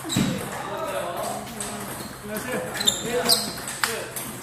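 Table tennis rally: the plastic ball clicking sharply off the paddles and the table, three quick hits about half a second apart in the second half, with voices in the background.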